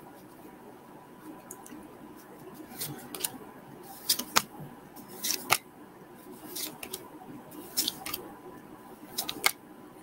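Quiet, sharp snips and snaps, about nine of them spaced irregularly through the second half, from opening a Pokémon booster pack and handling its cards.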